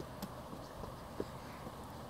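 Faint, steady low rumble of outdoor background noise, with two small clicks, one near the start and one about a second in.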